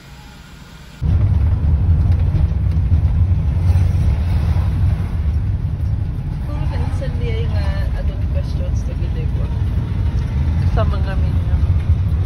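Car driving, heard from inside the cabin: a loud, steady, low rumble of engine and road noise that starts abruptly about a second in.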